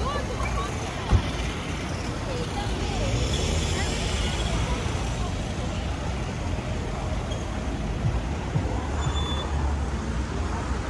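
Street traffic at a roundabout: cars and a motor scooter driving past, a steady rumble of engines and tyres that swells a few seconds in as a vehicle passes close. A sharp click about a second in.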